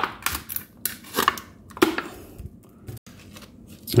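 Thin plastic of a frozen water bottle crinkling and clicking in irregular bursts as the cut-off top is pulled away from the ice block.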